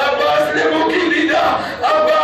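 Loud male voices chanting a mourning lament (noha), a man at the microphone leading, with held and gliding notes and a crowd chanting along.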